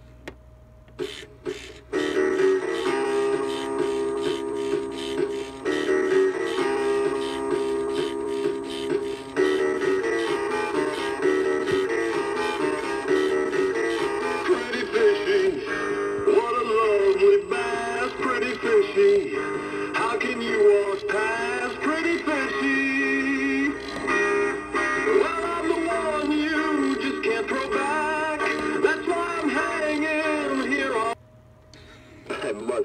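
A Sensational Boogie Bass animatronic singing fish plays one of its songs, a sung parody with backing music through its small built-in speaker. A few clicks come just before the song starts, about two seconds in.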